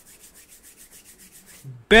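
Faint, quick rhythmic rubbing or brushing, about ten strokes a second, that stops shortly before speech resumes.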